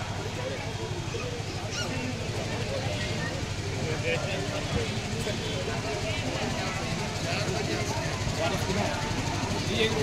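Steady outdoor background noise of a large gathering, with faint distant voices and no single sound standing out.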